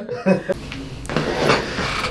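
Faint, indistinct speech over a steady low room hum.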